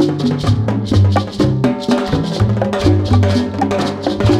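Latin jazz instrumental passage: a repeating bass line under pitched chords, with a steady rapid shaker-and-hand-percussion rhythm.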